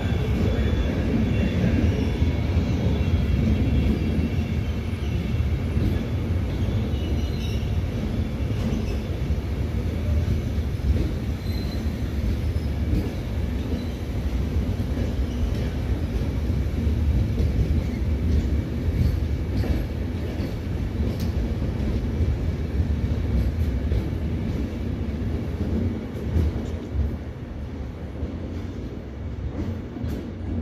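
Trenitalia Intercity Notte passenger coaches rolling past on the near track: a steady rumble of wheels on rail, with a faint wheel squeal in the first few seconds. The sound fades near the end as the tail of the train pulls away.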